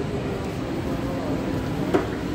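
Indistinct voices over a steady background hum, with one brief knock near the end.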